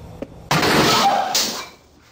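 A falling object crashing and clattering. It comes as a sudden loud burst about half a second in, with a second peak soon after, and dies away within about a second.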